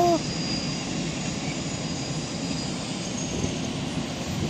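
Freight train passing, a steady rumbling noise with no breaks.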